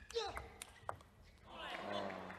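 Table tennis ball clicking off bats and table as a doubles rally ends, with a short shout near the start. About a second and a half in, crowd cheering and applause swells for the won point.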